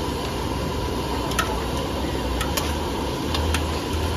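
Steady roar of a wok burner under a large wok of frying noodles, with a few sharp clinks of a metal spatula striking the wok as the noodles are stir-fried.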